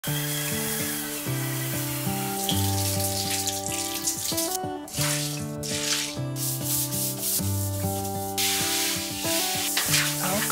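Background music with held chords over cleaning sounds on a tiled bathroom floor: a spin scrub brush rubbing the tiles, then, in the second half, water poured out of a bucket and sprayed from a shower head.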